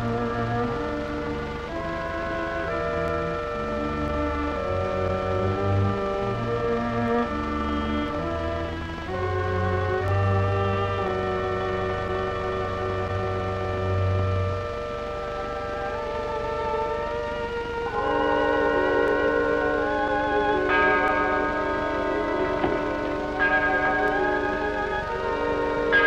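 Background film score music with slow sustained notes over a low bass line. The bass drops out a little past halfway, and higher wavering notes carry the music to the end.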